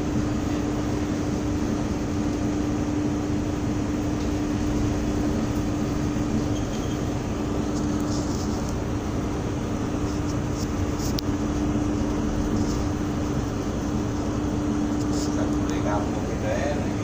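A ship's engine and machinery drone steadily under way at sea, with a constant low hum over an even rumble.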